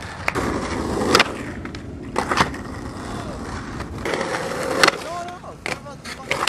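Skateboard wheels rolling on pavement, broken by several sharp clacks of the board being popped, landing and hitting the ground. Near the end there are a few short gliding tones.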